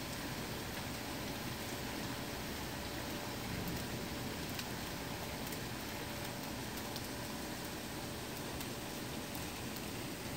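Steady monsoon downpour: an even hiss of heavy rain, with a few sharp drop hits here and there.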